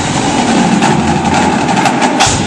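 Indoor percussion ensemble of marching drums and front-ensemble mallets, synth and electric bass playing a loud, dense sustained passage: a steady low rumble with few separate strokes standing out.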